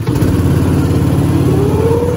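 Engine of an amusement-park ride car running as it pulls away, its pitch rising steadily over the second half as it speeds up.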